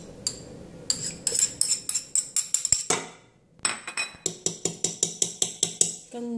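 Metal spoon clinking against the rim of an aluminium pot as garlic paste is knocked off it: a fast, even run of sharp clinks, about six a second, a short pause midway, then another run.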